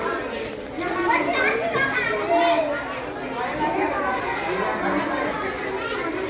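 Many children and adults talking at once in a hall, overlapping unintelligible chatter.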